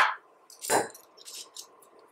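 A short scrape with a few faint clicks as the metal upper and lower halves of a shielded RJ45 keystone module are fitted together by hand.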